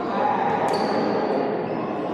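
Badminton racket striking a shuttlecock about two-thirds of a second in, a sharp crack followed by a ringing ping, over the steady echoing din of players' voices and play in a large sports hall.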